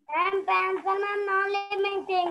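A child's high voice chanting "no" over and over in a drawn-out, sing-song tone at a nearly steady pitch, breaking off briefly twice.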